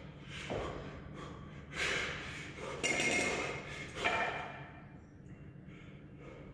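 A man breathing hard under load, about four forceful, noisy exhalations in a row, while holding two 28 kg kettlebells in the rack during a long-cycle set; the third breath is the loudest.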